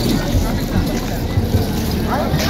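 Busy outdoor crowd: many people talking at once over a steady low rumble.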